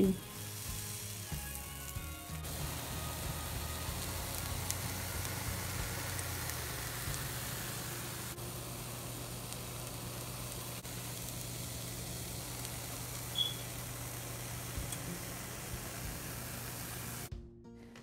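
Plantain fritters frying in oil in a frying pan: a steady sizzling hiss that stops abruptly near the end.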